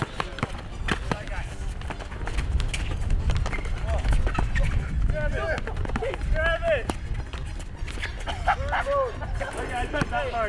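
Players shouting and calling out during a pickup basketball game, with the sharp bounces of a dribbled basketball and sneaker steps on asphalt, over a low rumble.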